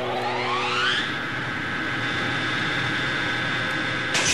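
A rising whine: several tones glide up together over about the first second, then hold steady at a constant pitch. It sounds like a siren or machine-like sound effect at the tail of the song.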